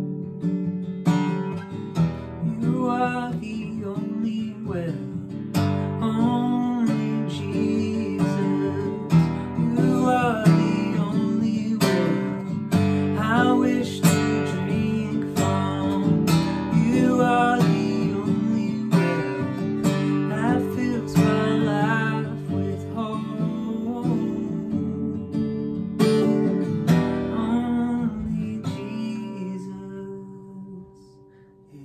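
Acoustic guitar strummed steadily with a man singing a worship song over it. The playing and voice die away near the end.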